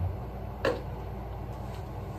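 Plastic pump dispenser on a face-wash bottle being pressed while its head is still twist-locked, so it does not pump. There is one short sound about two-thirds of a second in, over a steady low room hum.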